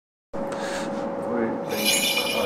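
Rustling and rubbing close to the microphone, with a thin steady hum underneath and a brighter scratchy rustle near the end.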